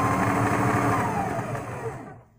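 Electric sewing machine running a continuous stretch of stitching, its motor tone rising slightly and then falling before it stops near the end.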